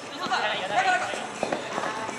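Futsal players calling out to each other during play, with running footsteps and a few short knocks, likely ball contacts or footfalls, about halfway through.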